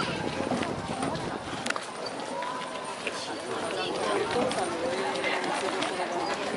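General hubbub of a crowd, many people talking at once, with a few scattered clicks and knocks.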